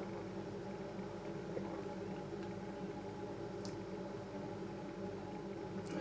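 Quiet room tone: a steady low hum with a few held tones, broken by a faint click about three and a half seconds in and another near the end.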